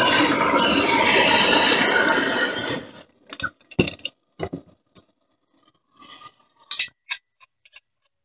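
MAP gas torch flame hissing steadily on the mold, stopping abruptly just under three seconds in; after that, only a few faint scattered clicks and light clinks.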